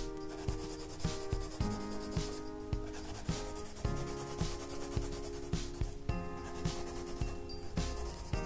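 A charcoal pencil scratching on sketchbook paper, shading in dark hair, under background music with a steady beat.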